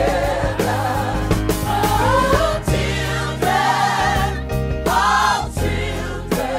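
Hip-hop track with a gospel choir singing drawn-out, wavering lines over a deep bass and drum beat.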